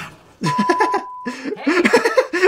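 Voices and chuckling, with a steady high-pitched beep lasting just under a second about half a second in.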